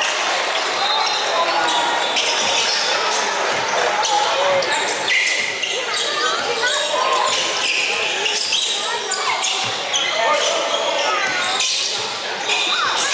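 A basketball being dribbled on a hardwood gym floor, with sneakers squeaking and indistinct shouts from players and onlookers, all echoing in a large gym.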